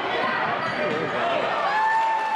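High school basketball game sounds on a hardwood gym floor: the ball bouncing and shoes squeaking in short chirps as players run, over voices from the stands.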